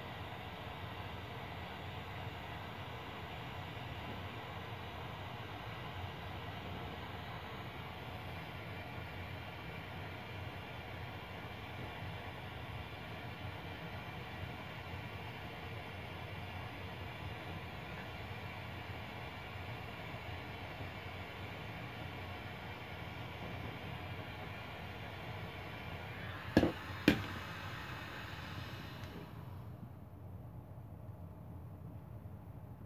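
Handheld propane torch burning with a steady hiss as its flame melts the frayed end of a nylon rope. Two sharp knocks come close together near the end, and the hiss stops just after.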